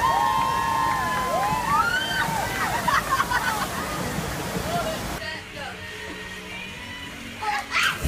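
Steady rush of water pouring over a surf-simulator wave ride. It stops abruptly about five seconds in.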